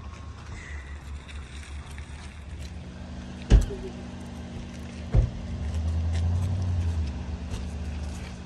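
A car engine running nearby, its low hum growing louder for a second or so in the second half. Two sharp knocks sound about a second and a half apart.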